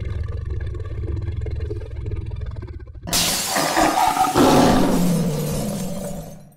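Lion-roar sound effect for a logo sting: a low rumbling growl, then a sudden louder roar about three seconds in that fades away.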